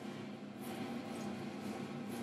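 Vanity Planet electric spin facial cleansing brush running faintly, its bristles scrubbing over a lathered face with a steady low whir.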